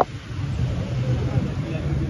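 Heavy armoured-vehicle engines idling steadily with a low hum under people's voices, with one sharp click right at the start.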